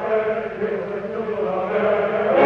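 Operatic voices singing together, holding long sustained notes in an ensemble passage. It is an old live recording with a dull, band-limited top.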